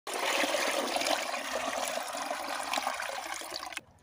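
Water poured from a plastic bucket into a metal drinking bowl, a steady splashing pour that stops suddenly near the end.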